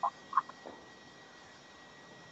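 Three short, faint calls of a small animal within the first second, over a faint steady high-pitched whine.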